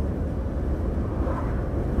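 Steady low rumble of a lorry's engine and road noise, heard inside the moving cab.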